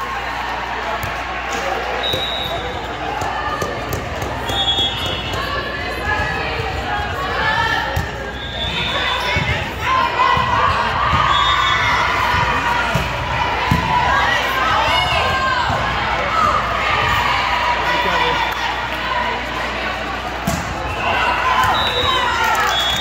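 Indoor volleyball rally in a large gym: the ball thudding off hands and arms, with players calling out and spectators talking and shouting.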